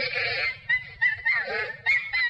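Chimpanzee screaming in a run of shrill calls, harshest at the start and again about one and a half seconds in.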